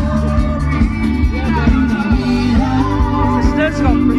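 Live band playing a Konkani dance song over loudspeakers, with a singing voice over a steady beat and heavy bass.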